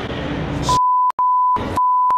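A steady, high, pure electronic beep tone cuts in under a second in, over a short stretch of outdoor background noise. It breaks off twice, once with a click and once with a short burst of noise, and resumes each time.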